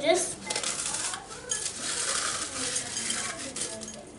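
Dry petit-beurre biscuits broken and crumbled by hand into a glass bowl: a dense run of small crunches and crackles, with pieces clicking against the glass.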